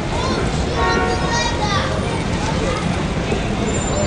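Busy city street ambience: a steady low rumble of traffic with passers-by's voices, one voice standing out from about one to two seconds in.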